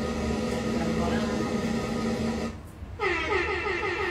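Women's voices over a steady low hum in a small room; after a short lull about two and a half seconds in, a woman's voice starts singing.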